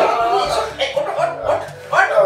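Background music: a song with a sung vocal line over a steady bass part.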